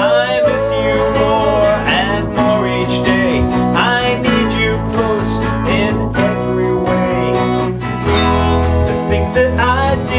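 Acoustic guitar strummed along with an electronic keyboard, with a man singing the melody.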